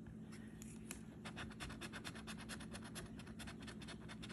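A coin scraping the coating off a paper scratch-off lottery ticket's bonus spot: quiet, rapid, even back-and-forth strokes, roughly ten a second, starting about a second in.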